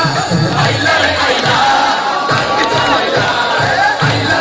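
Audience cheering and shouting over loud dance music; the music's bass beat drops away for a couple of seconds in the middle, leaving the crowd's shouts on top, and comes back near the end.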